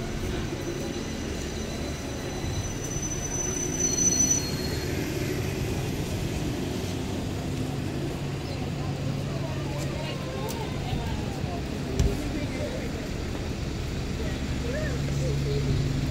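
City street traffic dominated by buses, with a steady low engine hum from buses running close by. A brief high squeal comes about three to four seconds in, and a single knock about twelve seconds in.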